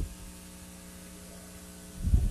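Steady electrical mains hum with a hiss from the sound system or recording chain, and a brief low thump right at the start.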